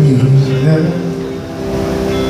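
Live worship music: a man singing held notes with slides between them over an electric guitar.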